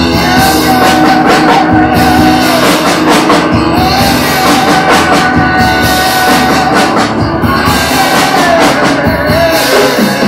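Live rock band music: a male voice singing long, held notes that bend at their ends, over strummed acoustic guitar and drums.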